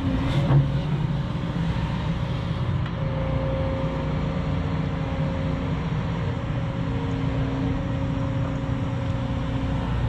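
Hyundai 210-class tracked excavator's diesel engine running steadily under hydraulic load as the bucket digs a narrow drainage trench. There are a couple of short knocks in the first second.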